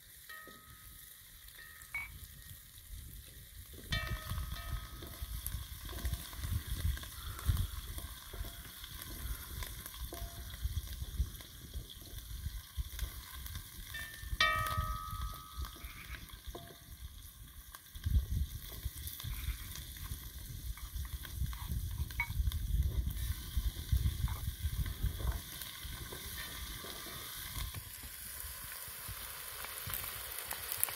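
Food sizzling as it fries in oil in a metal pot over a wood fire, stirred with a wooden spoon, with a few short ringing tones.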